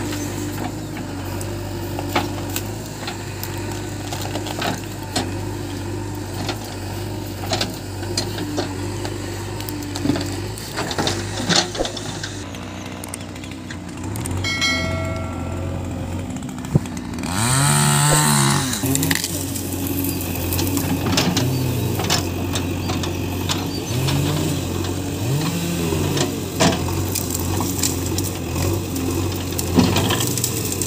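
JCB 3DX backhoe loader's diesel engine running steadily, its revs rising and falling several times as the hydraulics work the backhoe arm. Frequent short cracks and knocks run through it, from branches and roots snapping as the machine tears out trees and brush.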